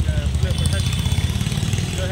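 A motorcycle engine running close by, a low rumble with rapid even pulses, amid city street traffic.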